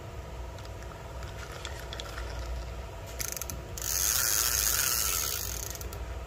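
Spinning reel being cranked by hand with the anti-reverse switched off (two-way), its gears and rotor turning. A brief run of fast clicks comes just past halfway, then a louder hissing spin for about two seconds.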